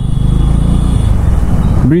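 Bajaj Dominar 400's single-cylinder engine running at low speed in traffic, a steady low rumble, with tyre noise on the wet road.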